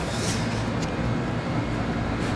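Steady rushing background noise outdoors, even and unbroken, with no speech.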